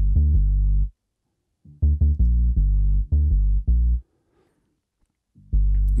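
Synth dub bass line playing from a loop: short phrases of deep notes separated by silent gaps, the middle phrase holding about five notes. It is heard through the BassLane Pro bass stereo-enhancement plugin.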